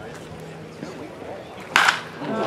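Low voice chatter around the field, then about 1.7 seconds in a single sharp pop as a pitched baseball smacks into the catcher's mitt.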